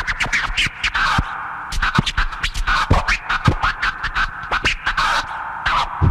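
Turntable scratching in a hip hop track: fast back-and-forth record scratches with the pitch sweeping up and down, coming in quick flurries with short breaks.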